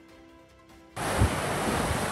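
Faint background music, then about a second in a loud steady rush of wind and sea surf starts abruptly, with low buffeting from wind on the microphone.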